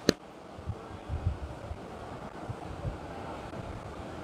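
Steady low background noise through a microphone during a pause in a talk, with one sharp click just after the start and a few soft low thumps about a second in.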